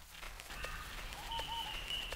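Quiet background with a few faint clicks, two short high chirps in the middle and a thin high whistle-like tone from the middle on.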